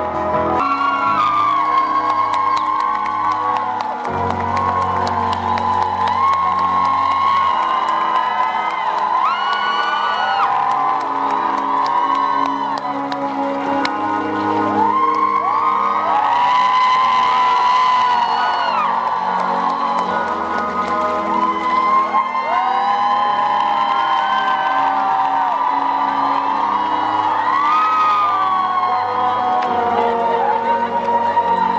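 Live band playing in a large hall, with a voice singing over bass and guitar and the audience whooping and cheering along.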